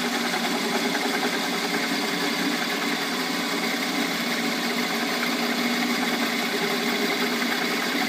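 Shop Fox M1018 metal lathe running steadily, its carbide bit on power feed turning a piece of oak, with a constant machine hum made of several steady tones.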